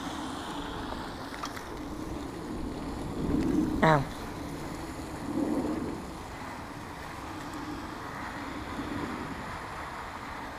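Steady wind noise on the microphone. About four seconds in there is a short pained "ow", with a couple of soft, muffled handling noises around it.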